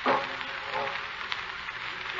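Steady surface hiss and crackle of an old 1949 radio broadcast recording, with a few faint clicks. At the very start a brief sound drops quickly in pitch and fades, the tail of a music cue.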